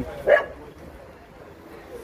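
A dog barks once, a single short loud bark, followed by low background noise.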